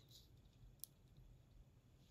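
Near silence: room tone, with one faint short click a little under a second in.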